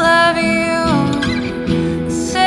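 Indie rock song: a voice sings a held line that slides down in pitch about a second in, over strummed acoustic guitar.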